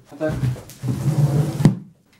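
A heavy 22.5 kg parcel wrapped in a white woven sack is hauled up with its fabric rustling, then set down on a wooden workbench with a single sharp thump near the end.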